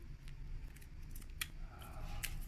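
Folded paper slips rustling in a small metal tin as one is picked out and unfolded: a scatter of crisp paper crackles, the sharpest about one and a half seconds in.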